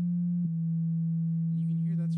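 ReaSynth software synthesizer playing held low notes from the virtual MIDI keyboard: a rounder, soft tone from a triangle wave blended with an extra sine tone. The pitch steps down to a lower note about half a second in and holds there.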